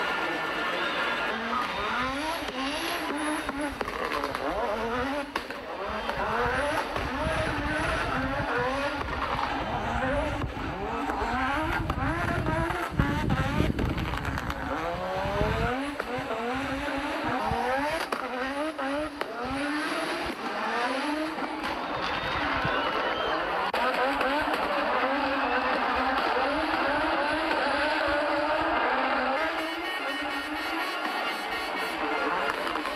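Turbocharged five-cylinder engine of an Audi Sport Quattro rally car revving hard again and again, its pitch climbing under acceleration and dropping back at each lift or gear change. About halfway through, a deep low rumble swells for a few seconds.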